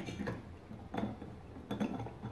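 Small Hot Wheels Color Shifters toy cars clinking and knocking against a glass bowl of water as they are dipped, a few light taps: at the start, about a second in, and near the end.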